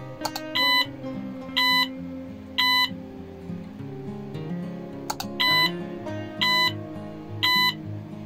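The game's buzzer sounds two sets of three short, evenly pitched electronic beeps, each set coming just after a short click. The beeps are about a second apart and are the loudest sound, over quieter background guitar music.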